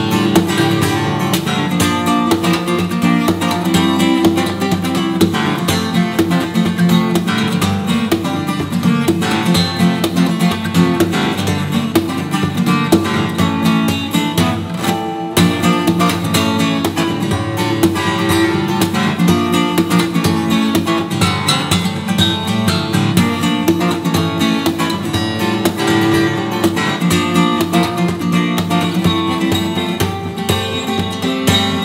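Solo cutaway acoustic guitar played fingerstyle: a steady, dense run of picked notes and chords with frequent sharp string attacks, broken by a very short gap about halfway through.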